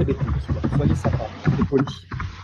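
Only speech: a man talking in French.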